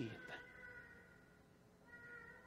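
Near silence in a pause of the sermon: faint room tone with a few thin steady ringing tones that fade away after the voice stops and return briefly near the end.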